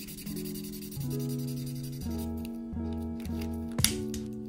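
Soft acoustic guitar background music of plucked notes. In the first second a washable marker rubs across paper, and there is a sharp tap near the end.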